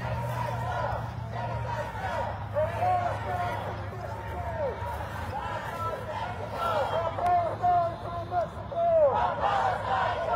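A protest crowd shouting and chanting, some voices through megaphones, many overlapping calls heard at a distance and getting louder near the end.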